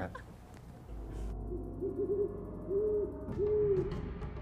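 Owl hooting, a quick run of three short hoots and then two longer ones, over a low rumble.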